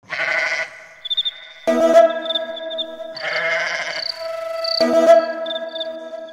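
Intro of a Telugu Christmas folk song: sheep bleating, four bleats a second or so apart, over held synthesizer notes and high repeated twittering trills.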